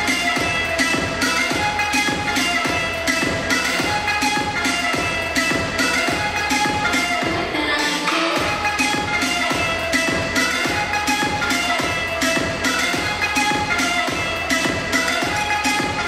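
Electronic dance music with a steady beat and a repeating melodic line. The low end drops out for a moment about halfway through, then the beat comes back in.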